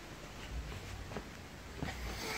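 Faint handling noise: a few light clicks and knocks, the loudest near the end, over a low steady hum.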